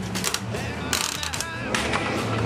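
Coin mechanism of a quarter-operated gumball machine being turned by hand, giving a run of ratcheting clicks as the crank turns and releases a gumball.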